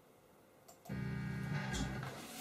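Quiet room, then about a second in a low, sustained chord from an amplified instrument starts suddenly and holds.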